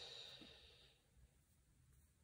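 Near silence, with a faint breath from the speaker fading out in the first second.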